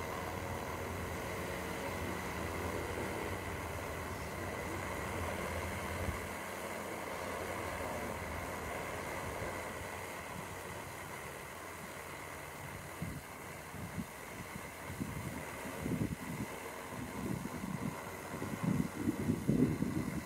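DJI Matrice 300 quadcopter's propellers whirring steadily as it hovers and manoeuvres, with a constant high tone. Over the last third, uneven low buffeting rumbles join in.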